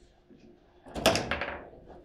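Table football play: a quick cluster of sharp knocks and clacks about a second in, the hard ball struck by the plastic men and rods banging against the table, with a faint single knock shortly before.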